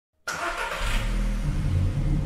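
Intro sound effect of a car engine running and revving, mixed with music. It cuts in abruptly just after the start and builds into a low rumble.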